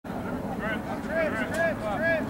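Several voices shouting and calling out on a football field, over a steady low rumble.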